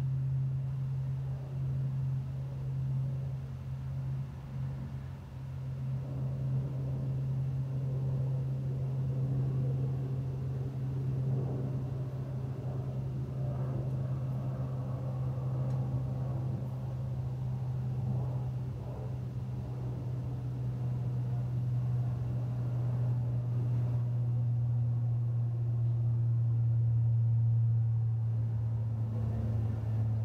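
A distant engine's steady low hum, building slowly to its loudest a few seconds before the end and then easing off.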